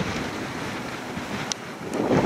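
Strong wind on the microphone, softened by a furry windscreen: a steady rushing noise, with one brief click about one and a half seconds in.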